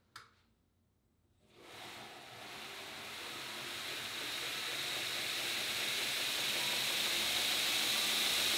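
2x72 belt grinder with a 2 hp motor on a VFD, started in reverse: a click, then after about a second and a half the belt's hiss and the motor's high whine build gradually as the drive ramps up speed.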